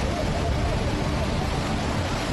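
Muddy floodwater rushing past in a loud, steady roar.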